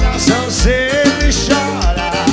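Live band music with a singing voice over a steady kick-drum beat of roughly two thumps a second.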